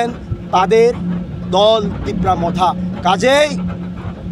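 A man's voice speaking in short phrases over a steady low hum.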